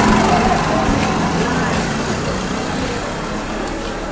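Outdoor background noise like road traffic, with faint voices in it, growing slowly fainter.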